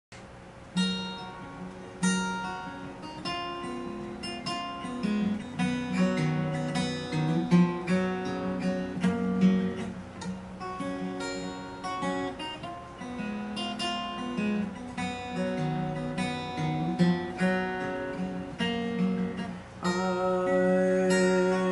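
Solo acoustic guitar playing an instrumental intro, a steady run of picked notes and chords ringing out, with no voice yet.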